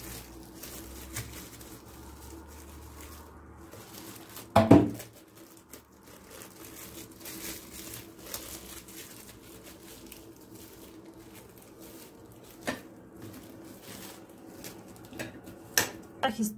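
Plastic cling film crinkling faintly and irregularly as it is wrapped and folded around a nut-and-honey bar, with one brief louder sound about five seconds in.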